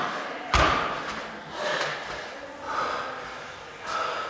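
A single heavy thump about half a second in as an athlete's feet land on the rubber gym floor, kicking down out of a handstand against the wall, followed by heavy, gasping breaths from the exertion.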